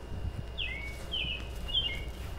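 A small songbird chirping: three short chirps about half a second apart, over a steady low outdoor rumble.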